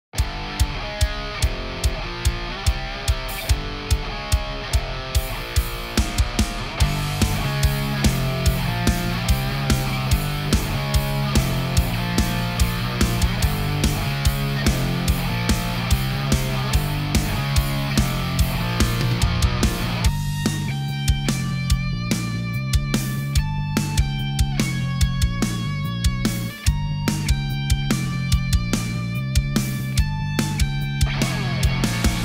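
Full-band heavy metal mix: distorted electric rhythm guitar played through a Line 6 Helix preset built on the Fatality amp model, with a steady drum beat. A bass line comes in about seven seconds in. About twenty seconds in, the dense rhythm guitar drops back, leaving clearer held notes over the drums and bass.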